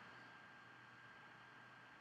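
Near silence: a faint, steady hiss of room tone.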